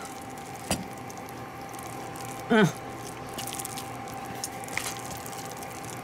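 Wooden spoon stirring thick mashed potatoes in a mixing bowl: soft scraping with light clicks, and a single knock about a second in.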